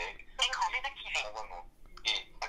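A dictated voice note playing back through the M-Line smartwatch's small speaker: recorded speech that sounds thin, with little bass.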